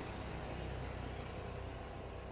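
Steady outdoor background noise: a low rumble under an even hiss, with no single clear source standing out.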